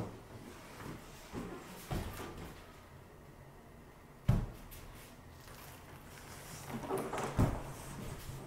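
Large foam-core V-flat boards being turned around by hand, bumping and scraping: a few dull knocks, the loudest about four seconds in, with scuffing near the end.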